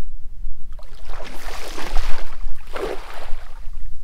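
A small four-foot cast net thrown for distance, with a long rushing swish about a second in as the net and its long hand line fly out, then a shorter burst near three seconds. A steady low wind rumble runs underneath.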